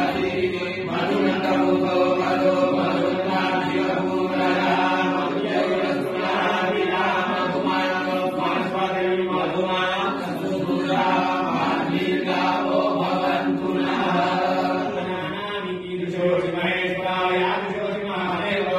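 Hindu devotional chanting: a voice intoning a mantra-like melody over a steady, sustained drone.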